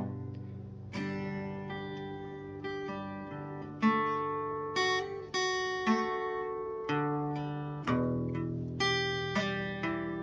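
Acoustic guitar played solo, chords strummed and left to ring, a new strum about once a second.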